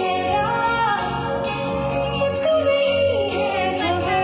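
Live pop concert heard from the crowd through a large PA: a female singer holds long notes that bend slowly in pitch over the band.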